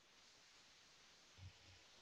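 Near silence: faint steady room-tone hiss, with one soft low bump about one and a half seconds in.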